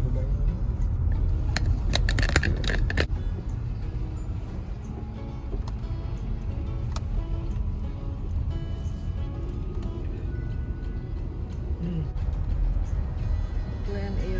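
Car cabin noise from inside a car driving slowly: a steady low engine and road rumble. A brief clattering rattle of clicks comes about two seconds in.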